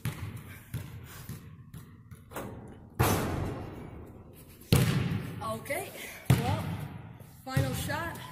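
Basketballs from missed shots hitting the hoop and bouncing on the gym floor: four loud hits spaced about a second and a half apart, each ringing out in a long echo.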